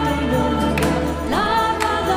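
Female solo voice and mixed choir singing a slow, sustained melody over a mandolin and classical guitar orchestra, the solo line gliding up to a held note about one and a half seconds in.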